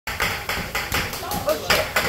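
Voices talking, with a run of short sharp sounds in among the speech.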